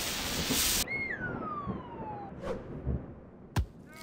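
Animation sound effects: a loud rushing whoosh that cuts off about a second in, then a long falling whistle, and a single sharp thud near the end.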